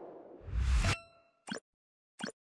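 Logo-animation sound effects: a swelling whoosh with a deep boom that cuts off sharply, then a short bright ringing ding, and a single short pop about a second and a half in.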